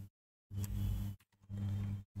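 Steady low hum with faint hiss from the recording's background noise, cutting out to dead silence a few times as a noise gate closes.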